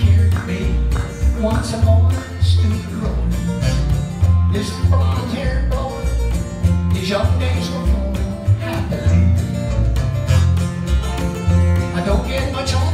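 Live folk-rock band playing a fairly quick, simple song in F: male lead vocal over strummed acoustic guitar, electric guitar and plucked upright bass, with the bass notes repeating about every half second.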